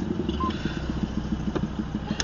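Vehicle engine running steadily with an even low pulsing, picked up by a dashcam inside a car.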